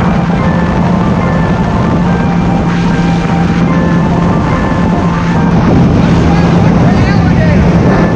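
Supercharged Sea-Doo jet ski engine running steadily at speed, with music laid over it.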